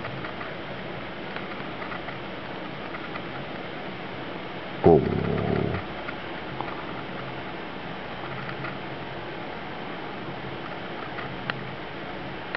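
A kitten gives one short, loud cry about five seconds in, during rough play with another kitten, over a steady low hiss. A few faint clicks come near the end.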